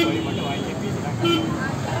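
Crowd hubbub: scattered voices over a dense, steady background din, with one voice standing out briefly just past the middle.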